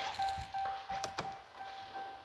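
A steady, single-pitch electronic tone, with a couple of light knocks about a second in.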